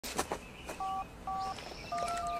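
Phone keypad touch-tone (DTMF) beeps: two short two-tone beeps of the same key about half a second apart, after a few sharp clicks.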